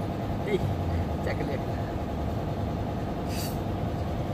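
A steady low rumble, as of an engine running nearby, under a few brief bits of speech, with a short hiss about three seconds in.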